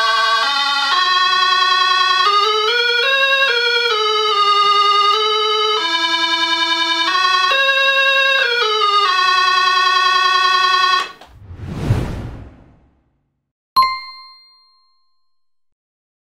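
Soviet 'Vesyolye Notki' analog toy synthesizer playing a melody of held notes, one at a time, stepping up and down in pitch for about eleven seconds. Then a swelling whoosh and a single ringing ding that fades out.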